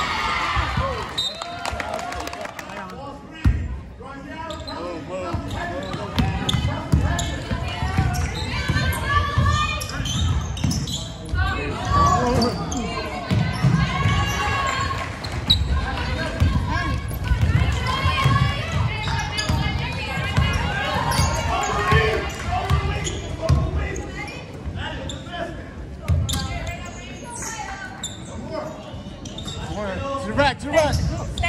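Basketball being dribbled and bouncing on a hardwood gym floor during play, a run of short low thuds, with players' and spectators' voices in the gym.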